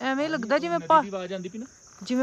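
A man talking over a steady, high-pitched drone of insects that runs on unbroken between his words.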